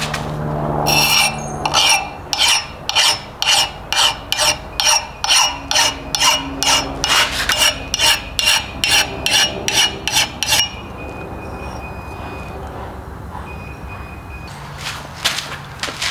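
Fine mill file drawn in quick, even strokes along the steel edge of a double-bitted axe, about two strokes a second, taking the burr off the edge. The strokes stop about ten seconds in, and a few more come near the end.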